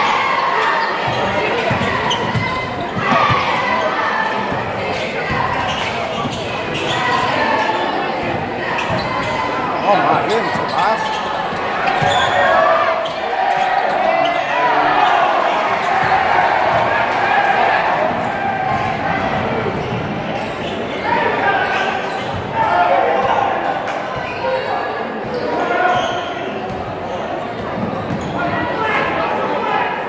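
Basketball dribbled on a hardwood gym floor during live play, under the steady chatter and shouting of a large crowd of spectators. The crowd's voices rise and fall, and everything echoes in the big hall.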